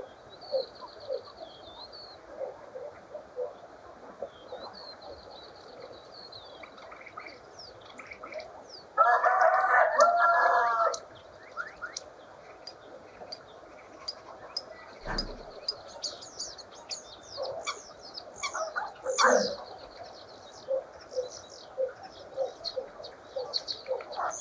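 Common starling song: drawn-out high whistles, clicks and rattling notes over a steady run of short chirps. About nine seconds in, a rooster crows once, loud, for about two seconds.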